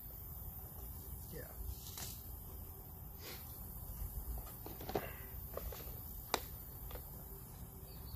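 Small handling noises of clear plastic seed cases being picked up and opened: scattered light clicks and rattles, with one sharp plastic snap a little past the middle. A brief low murmur of a voice is heard along with them.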